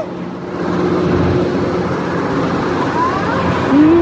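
Amusement ride machinery running with a steady low hum, getting louder about half a second in as the ride starts moving again.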